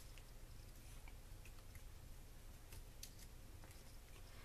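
Near silence: quiet room tone with a few faint, short clicks and rustles of hands handling a rolled paper flower and a glue pen.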